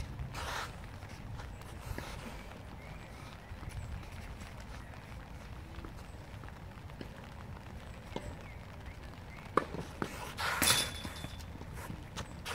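Tennis practice sounds: a player's footsteps and shoe scuffs on an artificial-grass court, then a sharp crack of a tennis ball struck by a racket a couple of seconds before the end, followed by a louder brief scuffing burst, all over a low steady rumble.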